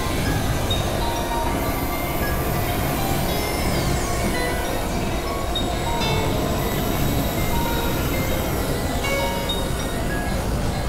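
Experimental electronic noise music from synthesizers: a dense, steady rumbling drone with short beeping tones scattered at different pitches and a few high sweeping glides.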